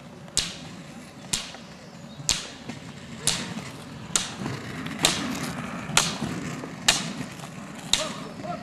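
Roller-ski pole tips striking asphalt in a steady rhythm, a sharp click about once a second as the skier plants the poles on each stroke.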